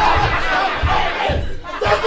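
Several voices shouting and yelling over one another during a staged on-stage scuffle, with dull thumps underneath.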